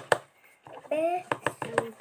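Light, sharp taps: one just after the start, then about five in quick succession in the second half.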